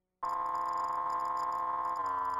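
Videotape line-up test tone: a steady electronic tone that starts abruptly a fraction of a second in, with fainter tones sounding along with it.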